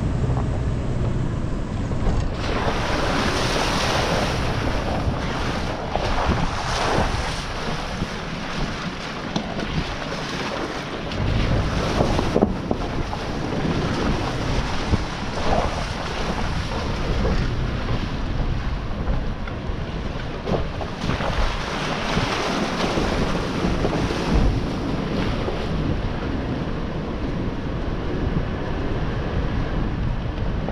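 A 2020 Toyota 4Runner TRD Off Road driving a dirt trail, heard as a steady low rumble of engine and tyres over dirt and leaves under heavy wind noise buffeting an outside camera microphone.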